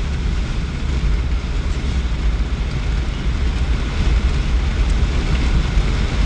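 Steady low rumble of road and engine noise inside the cabin of a moving vehicle, with an even hiss of wind and tyre noise over it.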